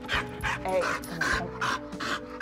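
Pit bull barking in a quick run of about six sharp barks at a person passing outside a glass door. This is the overexcited reactive barking and lunging at passers-by that the owner describes.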